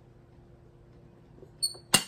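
Faint steady hum, then near the end a short click with a brief high metallic ring, followed by a sharp knock as a vintage Ice-O-Matic ice crusher is handled.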